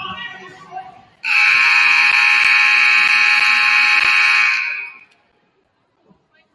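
Gym scoreboard horn sounding one loud, steady blast of about three and a half seconds as the game clock runs out, marking the end of the second period.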